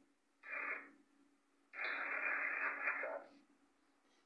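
Two bursts of radio-like static hiss, a short one about half a second in and a longer one from just under two seconds to past three seconds, over a faint steady hum.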